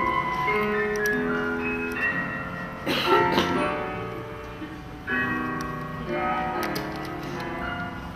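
Slow piano music playing, its notes held and changing in steps, with a fresh phrase starting about five seconds in. About three seconds in, a brief noisy sound is the loudest moment.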